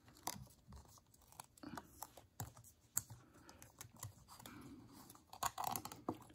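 Faint, irregular small clicks and ticks of a steel piston ring and thin plastic guide strips being worked by hand into the top ring groove of an oiled motorcycle piston.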